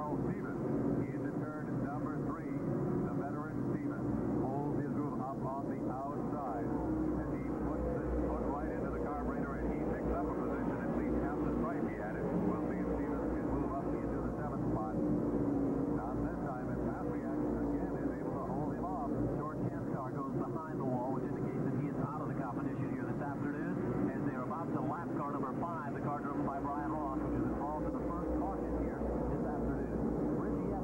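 A field of modified race cars' V8 engines running around the oval in a continuous drone, with indistinct voices mixed in. The audio is muffled and narrow, as on old tape.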